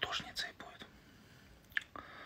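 A man whispering a few words under his breath, then a single short click near the end.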